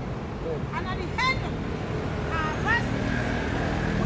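Steady low rumble of street traffic, with faint voices off the microphone and a few short high-pitched chirping calls.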